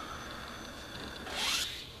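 Elephant-toothpaste foam, pushed by the gas of the reacting peroxide developer, forced through a tiny hole drilled in a plastic bottle lid: a faint hiss that swells into a short spraying rush about a second and a half in.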